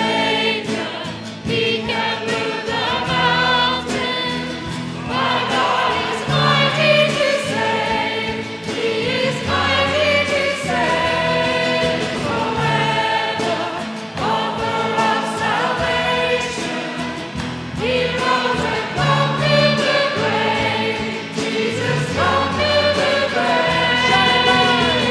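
Live church worship band of keyboard, electric guitar and drums, with singers at microphones and the congregation singing a contemporary worship song.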